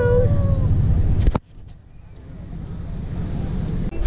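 Wind rumbling on the microphone under the tail of a woman's drawn-out, sing-song "hello", cut off sharply about a second in. Then a quieter, low, steady rumble that slowly grows louder: a bus running, heard from inside the cabin.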